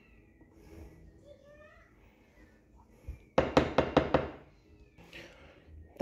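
A wooden spoon knocks against a stoneware baking dish in a quick run of about six sharp knocks, a little past halfway. Otherwise the room is quiet apart from a few faint high gliding sounds early on.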